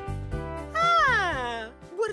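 Light background music runs throughout. Across the middle second it is joined by a loud, voice-like 'ooh' that slides steadily down in pitch.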